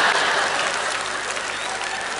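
Audience applauding after a punchline, loud at first and slowly dying down.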